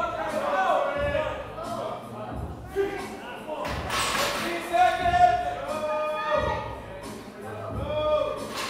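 Indistinct raised voices talking and calling out, with a low thud repeating about every second and a half.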